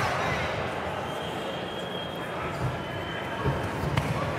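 Boxing-hall crowd murmur with a few dull thumps from the boxers on the ring canvas near the end.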